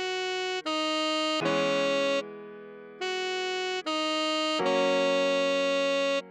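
Tenor saxophone playing a slow melody of about five held notes, each starting and stopping cleanly, over sustained keyboard chords. About two seconds in the melody pauses for under a second while a chord fades.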